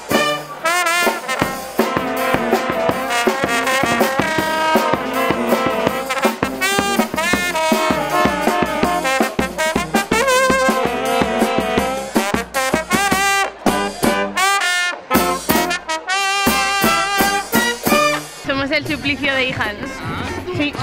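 Street band music: brass instruments playing a lively tune over a steady drum beat.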